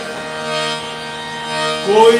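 Harmonium holding a steady chord between sung phrases, with a man's singing voice coming back in near the end.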